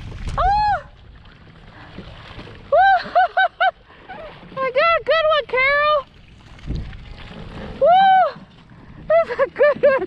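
A bass thrashing and splashing in a landing net at the start, then a woman's repeated high-pitched wordless squeals of excitement: short rising-and-falling cries, several in quick runs.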